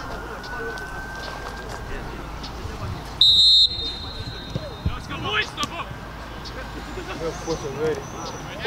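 Referee's whistle, one short shrill blast of about half a second, about three seconds in, signalling that the free kick may be taken.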